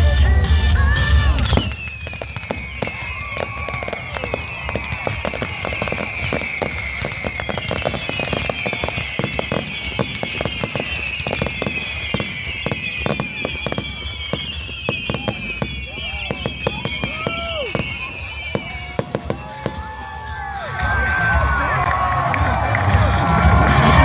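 Fireworks display: a heavy boom opens, then dense rapid crackling and popping runs on, under many high whistles that each slide down in pitch. Near the end a louder burst of bangs and crackle sets in.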